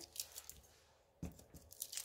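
Faint handling noises as a cast resin coaster holder is lifted and moved over the work surface: a few soft ticks, then one sharper click about a second in.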